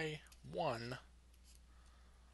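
A man's voice saying a short word or two, then faint clicks of a stylus tapping on a drawing tablet while handwriting, over a low steady hum.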